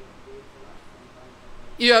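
A pause in a man's lecture, with only faint room tone, then his speaking voice picks up again near the end.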